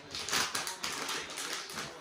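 A dog-treat packet crinkling and rustling in irregular crackles as a hand rummages inside it for a treat.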